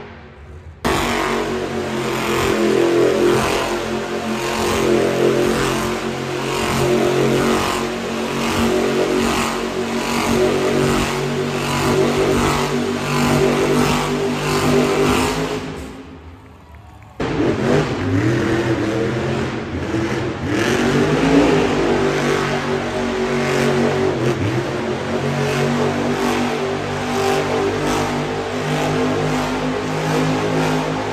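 Monster trucks' supercharged V8 engines revving and running, over loud music with a regular beat. The sound drops out briefly twice, at the start and about sixteen seconds in. After the second break the engine pitch rises and falls with the revs.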